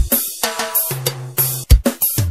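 Forró pisadinha music in an instrumental passage led by a drum kit, with snare, kick drum and cymbal hits over a low bass line.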